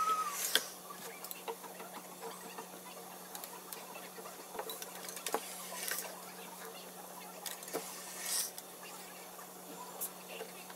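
Ironing by hand: a steam iron sliding over and being set down on an ironing board, with light clicks, knocks and brief rustles of fabric as the pants are handled. A steady low hum runs underneath.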